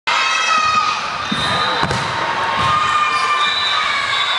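Girls' voices shouting and cheering in a gym, with a few dull thuds of a volleyball bouncing on the hardwood floor.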